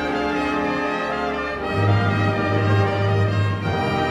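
Symphony orchestra playing a contemporary classical piece, strings and brass holding sustained chords. A deep bass note drops out at the start and comes back in about two seconds in.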